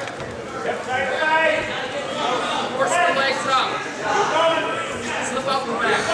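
People's voices calling out and shouting in a gymnasium, with overlapping chatter from onlookers.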